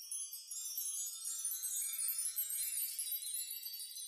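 High tinkling chimes: a quiet shimmer of many bell-like tones in the manner of wind chimes, thinning out toward the end.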